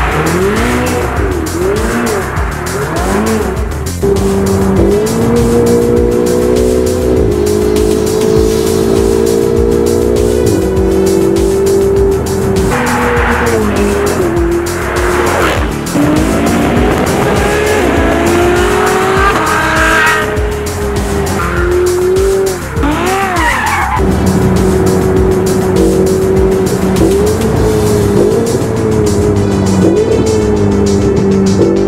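Music with a steady beat mixed with Ferrari sports car engines revving and tyres squealing as the cars drift; the engine note climbs in long rising sweeps and swoops up and down in short bursts between held steady stretches.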